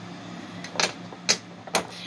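Three sharp clicks, about half a second apart, over a faint steady low hum.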